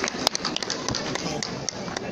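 Scattered audience clapping: many irregular claps, with crowd voices underneath.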